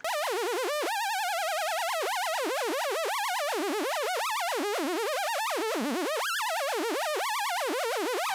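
Xfer Serum sawtooth synth note held steadily while Serum's second chaos oscillator modulates oscillator A's coarse pitch. The pitch wobbles quickly and erratically in a loose pattern that keeps restarting at irregular times, with a couple of sudden upward jumps.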